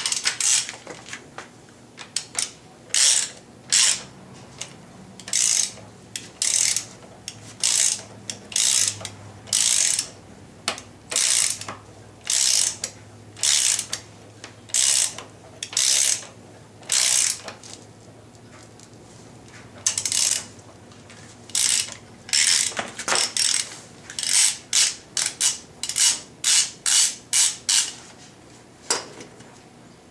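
Hand ratchet clicking in repeated back-swings, roughly one stroke a second, as it drives the bolt at the centre of the harmonic balancer on a 5.3 LS V8. Near the end the strokes come quicker and shorter.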